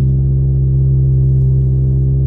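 Steady low drone of a car's engine heard from inside the cabin while driving, holding one pitch.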